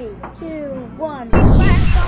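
Voices with falling, drawn-out tones, then about two-thirds of the way in a sudden loud boom that opens into music, with a quick run of short high beeps over it.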